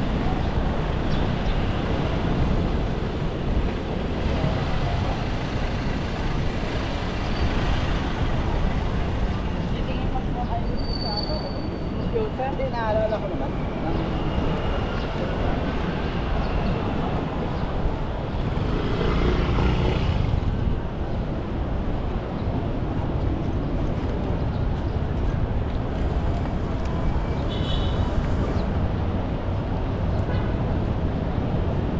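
City street traffic: a steady wash of cars and motorcycles running along the road, with one sounding louder and closer about twenty seconds in. Passersby's voices and a few short high gliding tones are mixed in.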